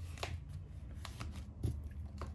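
Hands handling a plastic cash-binder envelope and paper bills: light rustling with scattered small clicks, and a soft thump a little past halfway.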